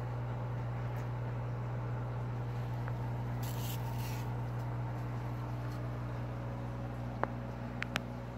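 Steady low hum of running grow-tent equipment, with a brief rustle of leaves being handled about halfway through and a few light clicks near the end.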